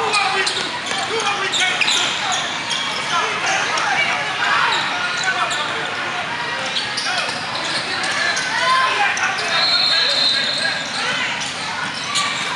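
Indoor basketball game sounds: a basketball bouncing and sneakers squeaking on the court over a steady hubbub of voices echoing in a large gym.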